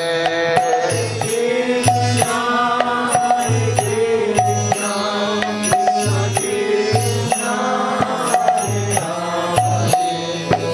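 Kirtan: a man singing a devotional chant over a steady drone, with a repeating drum pattern and sharp percussion ticks keeping time.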